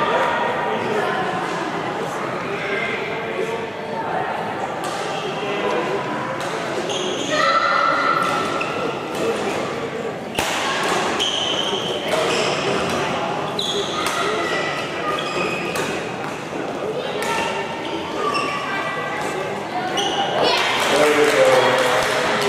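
Badminton rally: rackets striking the shuttlecock in sharp cracks and players' shoes hitting and squeaking on the court, over the steady chatter of spectators in a large hall.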